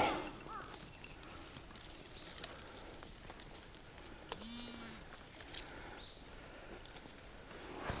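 Faint digging in soil and leaf litter with a hand digger: scattered scrapes and small clicks, and one short, low tone about halfway through.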